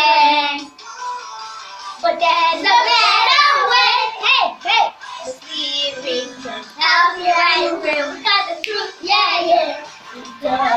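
A group of children singing a song together, the voices dropping back briefly about a second in before the next sung line comes in strongly.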